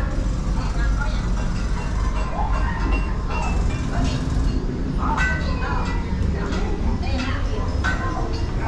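People's voices talking indistinctly over a steady low rumble inside an enclosed dark-ride tunnel, with the voices clearest about halfway through and again a few seconds later.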